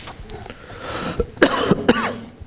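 A man coughing, with two sharp coughs in the second half.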